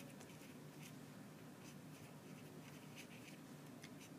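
Faint scratching of writing on a paper worksheet: a few short, light strokes over a low steady room hum.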